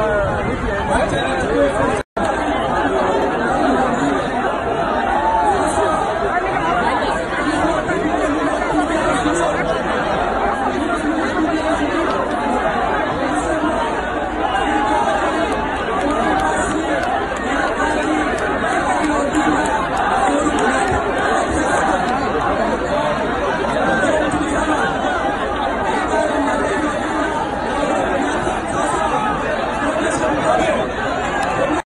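A large crowd of many voices talking and calling out at once, a dense, steady babble with no single speaker standing out. A momentary break in the sound about two seconds in.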